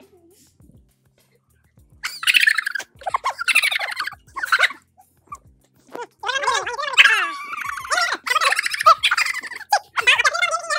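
A moment of near silence, then high-pitched, wordless vocal sounds that start and stop in short runs from about two seconds in.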